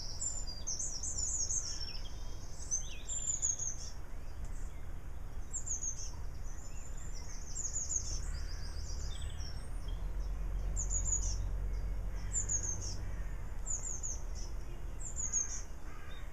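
Small birds singing: short, high phrases that fall in pitch, repeated every second or so, over a low rumble that grows stronger after about eight seconds.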